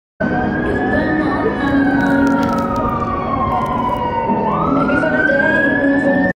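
An emergency vehicle siren wailing over street traffic, its pitch sliding slowly down for about three seconds and then rising again near the end.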